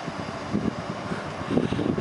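Steady noise of an electric commuter train standing at a station platform.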